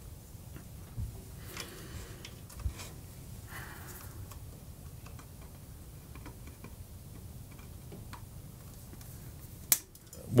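Faint scattered clicks and rustles of insulated wires and small tools being handled inside a metal amplifier chassis, with one sharp click just before the end.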